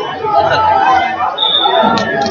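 Overlapping spectators' voices and chatter in a large hall, with a brief high steady tone just before the end.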